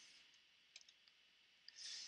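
Near silence, with a few faint clicks a little under a second in and another near the end, as a computer document is paged forward. There is a soft breath just before the end.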